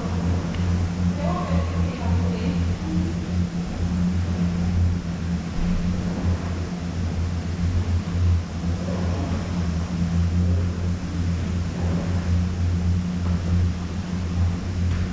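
Conveyor-belt lift running with a steady low hum inside a corrugated metal tunnel, with faint voices now and then.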